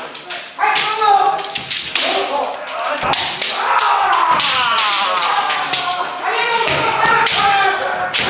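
Kendo sparring: many voices shouting kiai at once, overlapping and drawn out, over repeated sharp cracks of bamboo shinai striking each other and the armour, with the thud of stamping feet on the wooden floor.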